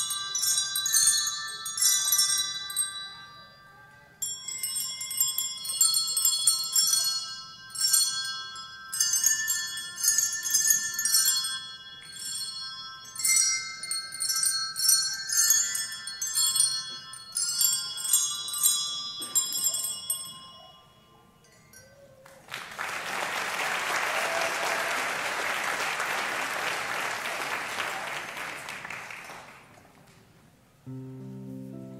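Children's set of colour-coded hand bells playing a slow tune, each note struck and left to ring over the next, ending about twenty seconds in. After a short pause an audience applauds for about seven seconds.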